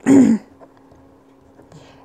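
A person clears their throat once, briefly, at the start.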